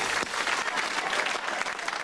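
Studio audience applauding, a dense patter of many hands clapping.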